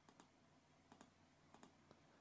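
Faint computer mouse clicks: three quick double clicks, press and release, spread over two seconds, with one more single click near the end, over near silence.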